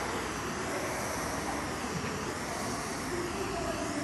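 Steady rushing noise of spray polyurethane foam equipment running: the high-pressure spray rig and the hose-fed gun spraying foam onto the roof.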